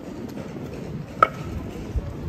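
City street background noise with one sharp metallic click that rings briefly, a little past a second in, and a soft thump near the end.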